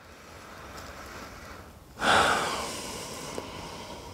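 A person breathing during a pause in talk: a quiet drawn-in breath, then about halfway a sudden louder exhale that fades away over a second or so.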